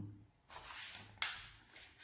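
Sheet of paper rustling as it is handled and folded over, in soft swishes, with a sharper rustle just over a second in.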